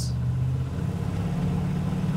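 Hot rod 1937 Ford coupe's engine accelerating hard, heard from inside the cabin: a steady low engine note that steps up in pitch about two-thirds of a second in.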